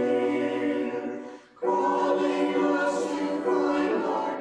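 Small mixed choir singing sustained chords, breaking off briefly about a second and a half in before coming back in together.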